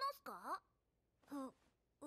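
Japanese anime dialogue: a character's line with a swooping pitch ends about half a second in, then a short voiced utterance follows about a second later, with near silence between.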